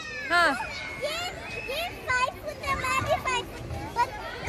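Children playing on a playground: many high-pitched children's voices calling out and chattering over one another.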